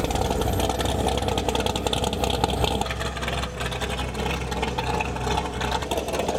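A V8 muscle car's engine idling with a loud, steady rumble.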